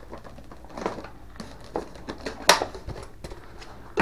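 Handling noise as the canopy hatch of an RC plane is pried off by hand: a series of small clicks and knocks, with one sharper click about two and a half seconds in.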